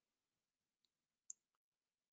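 Near silence, with one faint short click a little over a second in.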